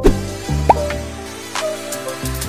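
Background electronic music with a bass line and a steady beat, with a short rising blip about two thirds of a second in.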